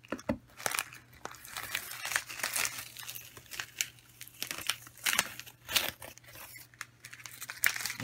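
Vinyl stencil being peeled off a painted sign board by hand and crumpled: irregular crinkling and crackling in short bursts.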